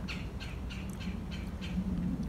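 A bird chirping repeatedly, short high notes about three a second, over a steady low background hum.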